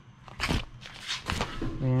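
Handling noises: two short rustling scrapes about a second apart as objects are moved about on fabric couch cushions, then a man's voice starts near the end.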